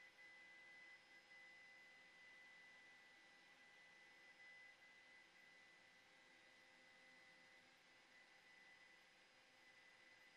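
Near silence: a faint steady hiss with a thin, constant high whine.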